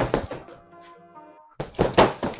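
Gloved punches thudding into a freestanding Everlast punching bag: a hit at the start and a quick flurry of hits near the end. Background music holds sustained chords in the quieter stretch between them.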